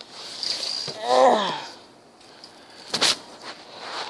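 A short wordless vocal sound with a falling pitch, like a hum or drawn-out "uh", about a second in, then a single sharp click about three seconds in, over faint background noise.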